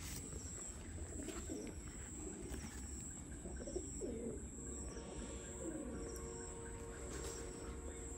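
Domestic pigeons cooing softly, a few low wavering coos, with faint short high chirps repeating about once a second.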